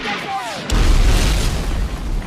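Incoming artillery shell whistling in with a falling pitch, then exploding about two-thirds of a second in: a loud blast with a deep rumble that dies away over about a second.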